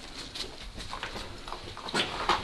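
Faint footsteps, a soft step roughly every half second, on the floor of an empty building.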